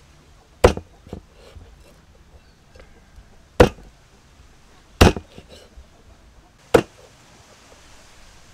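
Meat cleaver chopping raw frog pieces on a thick round wooden chopping block: four loud, separate strikes spaced one to three seconds apart, with a lighter knock about a second in.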